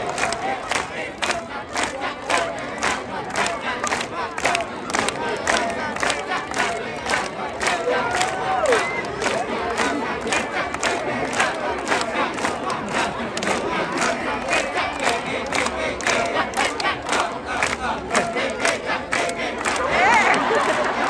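A Kecak chorus of many men chanting the fast, interlocking "cak-cak-cak" rhythm, with single voices calling and shouting over it.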